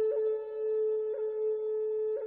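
Meditation music: a flute holding one long steady note, with a quick flick in the note about once a second.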